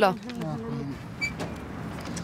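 Voices of people talking nearby, with one short high beep-like chirp a little past a second in.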